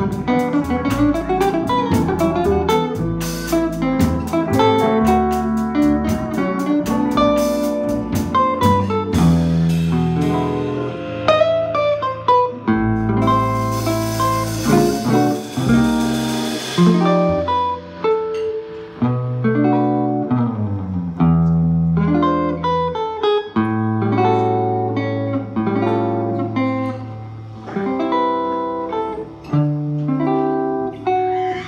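Small jazz band playing live: electric archtop guitars, pedal steel guitar, upright bass and drums.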